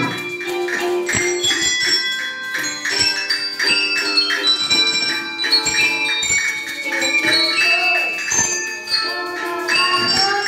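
A children's handbell ensemble playing a tune. Single bell notes at different pitches are struck one after another, each ringing on so that the notes overlap.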